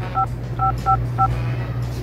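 Phone keypad dialing tones: four short two-note DTMF beeps at uneven spacing as a number is keyed in, over a steady low hum.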